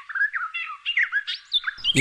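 Small birds chirping: many quick, overlapping high chirps.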